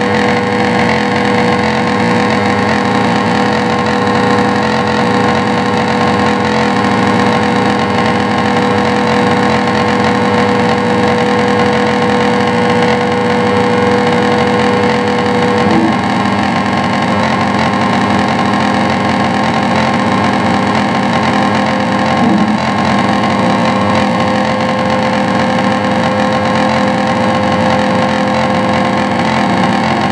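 Dense, steady wall of distorted electronic noise from an electric guitar and effects-pedal rig. A held drone tone runs underneath, breaks off about halfway through and comes back a little higher.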